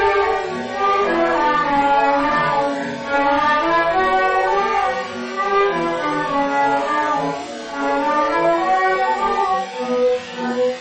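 Instrumental passage of a Moroccan song, with a bowed string section playing the melody in flowing phrases and no voice.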